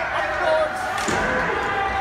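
Spectators' voices carrying in an ice rink during a youth hockey game, with one sharp knock from the play on the ice about a second in.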